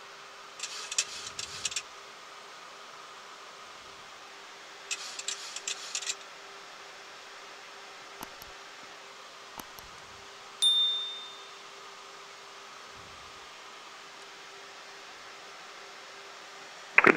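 Sound effects of a YouTube subscribe-button animation: two short clusters of clicks in the first six seconds, then a single bright bell ding about ten and a half seconds in that rings out for about a second. A steady low cockpit hum runs underneath.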